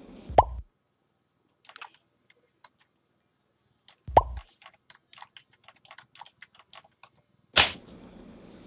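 Two short rising 'plop' chat-notification sounds from a web chat window, about four seconds apart, with a run of soft computer-keyboard typing clicks between and after them. A brief loud burst comes near the end.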